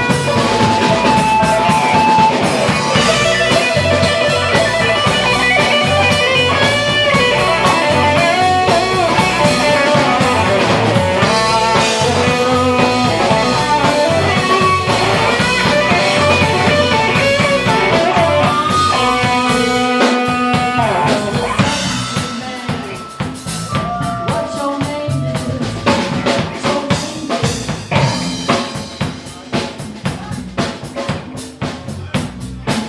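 Live blues band playing: guitar lines with bent notes over drums and bass. About two-thirds of the way through the band drops down in level and the drums carry on more sparsely.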